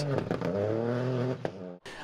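Ford Fiesta Rally4 rally car engine running under power as the car drives away, one steady engine note that fades and then cuts off suddenly near the end.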